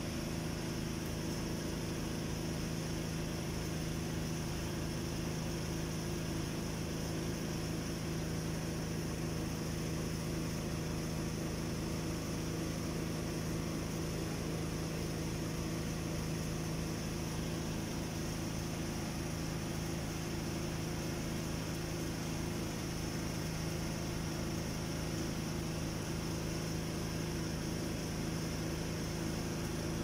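Steady low mechanical hum holding one pitch throughout, with a faint steady high-pitched hiss above it.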